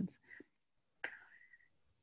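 Quiet pause between sentences: a faint click about a second in, then a short, soft breath of the presenter drawing air before speaking again.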